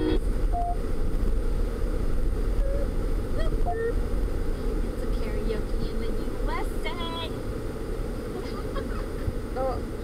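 Steady low rumble of a moving van's cabin, with short scattered bits of passengers' voices and laughter over it.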